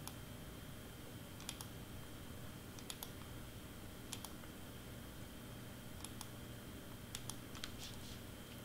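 Faint, scattered clicks of a computer mouse and keyboard, about ten in all and several close together near the end, over a low steady room hum.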